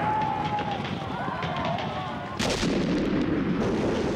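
Battle sounds: scattered gunfire crackling, then about two and a half seconds in a sudden loud explosion, followed by about a second of rumble.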